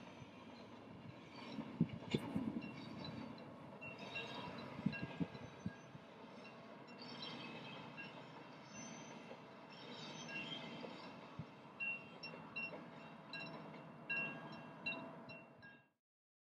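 Freight train of loaded hopper wagons rolling past: a steady rumble of wheels on rail with a few sharp knocks, about two and five seconds in, and intermittent high-pitched wheel squeal. The sound fades out just before the end.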